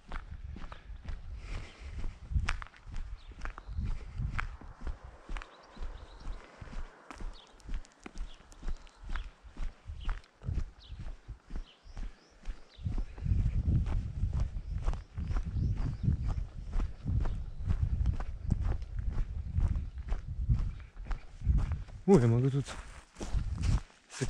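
A person's footsteps walking steadily along an asphalt road and then onto a gravel and dirt track. From about halfway through the steps turn louder, with heavy low thuds against the camera. A voice speaks briefly near the end.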